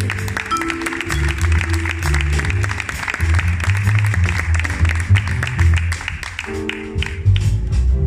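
Live jazz band playing, with double bass notes and drums carrying on under audience applause for a solo; the applause fades out near the end.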